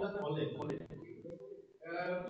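A man speaking into a microphone, with a brief pause near the end.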